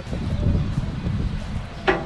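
Wind rumbling on the microphone, with faint drawn-out talk in the first second and a spoken word starting near the end.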